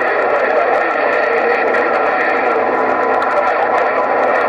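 President HR2510 radio's speaker giving out steady, loud static with several faint steady whistling tones running through it, with no voice on the channel. The sound is thin and tinny, as from a small speaker.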